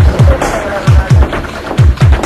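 EBM (electronic body music) track from a DJ mix: heavy electronic kick drums that drop in pitch, hitting in quick pairs a little under once a second, under dense, gritty synths.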